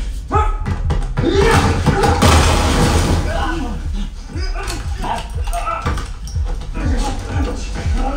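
Action-film fight soundtrack played over a 7.2.4 Atmos home theater and heard in the room: repeated hits and crashes and short grunts of effort over a heavy, steady bass and score.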